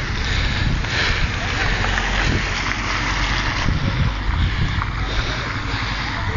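Wind buffeting the microphone: a steady rushing noise with a deep rumble underneath, over faint voices of a crowd.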